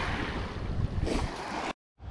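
Small waves lapping and washing over a pebble river beach, with wind on the microphone. The sound cuts off suddenly near the end.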